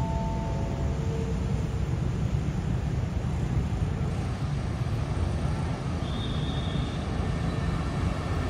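Steady low rumble of a diesel passenger train approaching from a distance along the line.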